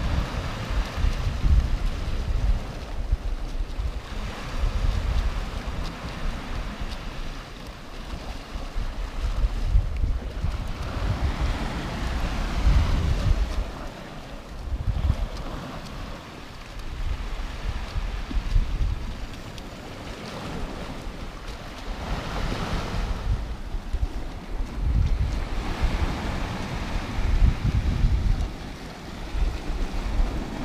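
Sea surf breaking and washing against the rocky shore, rising and falling in irregular surges. Wind rumbles on the microphone throughout.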